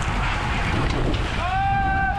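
Wind rushing over the microphone of a bike-mounted action camera while riding in a road-race peloton at about 31 km/h, a steady loud rush with tyre and road noise underneath. In the last half second a short, high-pitched held tone cuts through the rush.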